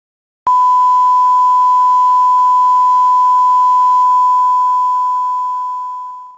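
A single loud, steady electronic beep tone starts abruptly about half a second in, holds at one pitch, and fades away near the end.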